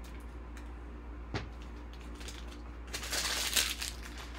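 Trading cards in plastic sleeves and rigid toploaders being handled and set down on a table: a single sharp tap a little over a second in, then about a second of plastic rustling and clatter near the end, over a steady low hum.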